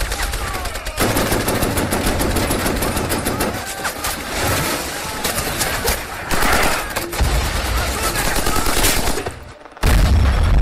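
Battle sound effects from World War II combat footage: rapid machine-gun fire over heavy low booms, dipping briefly near the end before rising again.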